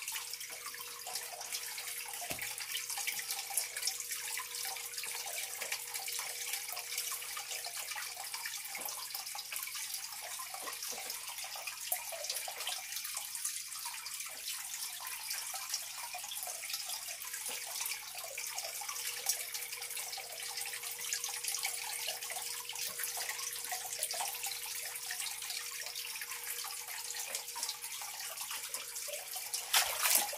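Steady running water from a small filter-fed waterfall pouring into a pond, with a faint steady hum under it.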